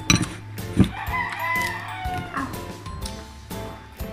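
A rooster crowing once, a single call that rises and then falls, with a short knock just before it. Faint background music runs underneath.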